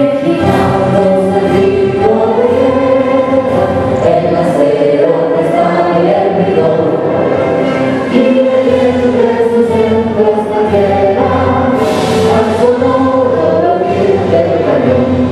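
A small mixed vocal ensemble of soldiers, men and women, singing a national anthem together in held, slowly moving phrases.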